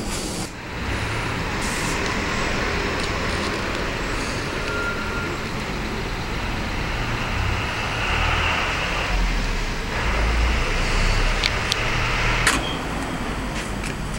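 Grout-injection machinery running steadily: a low rumble under a hiss. The rumble swells for a couple of seconds past the middle, and a few sharp clicks come near the end.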